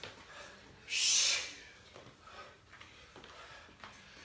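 A short, sharp exhale about a second in, a breathy hiss with no voice in it, from someone working hard at exercise. Only faint breathing and movement sounds follow.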